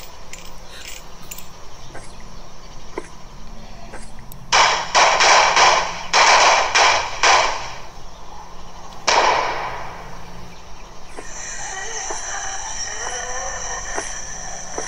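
A quick volley of pistol shots, about five or six in a row, then one more shot about two seconds later. Sustained musical tones come in near the end.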